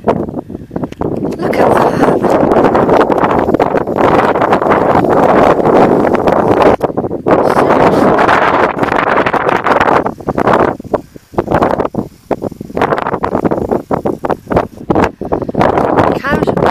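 Wind buffeting the camera's microphone in loud, uneven gusts, dying down for a moment about two-thirds of the way through.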